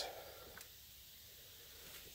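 Quiet background hiss with a faint click about half a second in.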